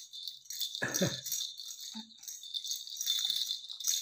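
A plastic baby rattle with beads inside being shaken repeatedly, giving a continuous uneven high-pitched rattling. A short voice sound comes about a second in.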